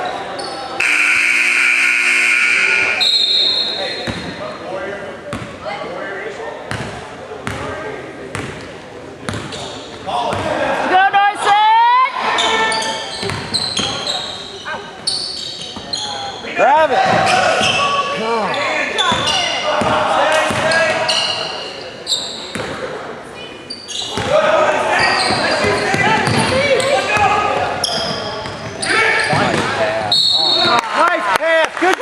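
A basketball bouncing on a gym's hardwood floor during play, with spectators' voices throughout and a loud steady tone lasting about two seconds near the start.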